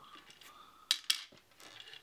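Small plastic game pegs clicking against a hard plastic game board as they are set into its slots: two sharp clicks close together about a second in, with a few fainter taps around them.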